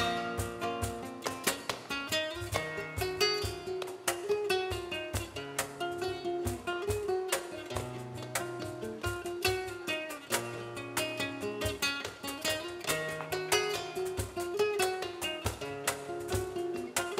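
Flamenco acoustic guitar playing a busy passage of plucked notes over a repeating bass line, with many sharp percussive strikes throughout.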